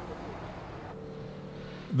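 Faint steady outdoor street ambience with a low traffic hum. About halfway through, it changes to a quieter steady hum with a faint tone.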